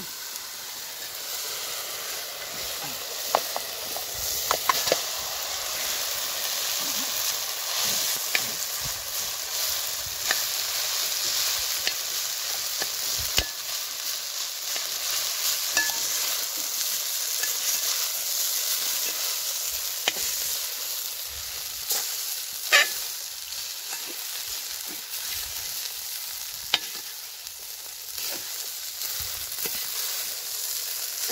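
Vegetables and rice sizzling in a large metal pot, stirred with a metal skimmer ladle: a steady frying hiss with scattered sharp clicks, the loudest a little after the middle.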